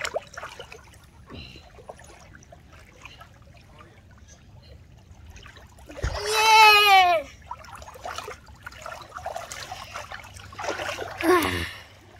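Shallow water splashing and trickling as a stuffed puppet is dipped and dragged through it by a wading person. About six seconds in, a loud, high-pitched voice calls out once, falling in pitch.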